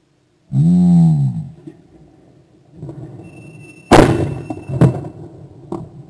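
A shooter's drawn-out call for the target, then a little over three seconds later a single loud shotgun shot that breaks the clay target, followed about a second later by a second sharp report nearly as loud and a lighter crack near the end.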